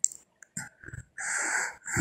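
A man breathing heavily into a phone microphone in a recorded voice message: a click, a few short breaths, then one long breathy exhale near the end.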